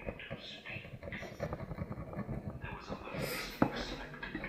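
A voice speaking indistinctly throughout, with one sharp click about three and a half seconds in.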